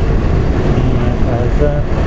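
Motorcycle engine running with road and wind noise as the bike is ridden along, a steady low drone.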